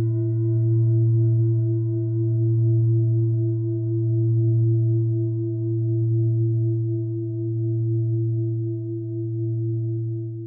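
Sustained low meditative drone with a few fainter higher ringing overtones, swelling and easing in slow waves about every two seconds.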